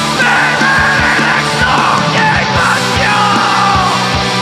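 Live heavy rock band playing: distorted electric guitars and bass over a steady kick-drum beat, with a screamed vocal line coming in just after the start.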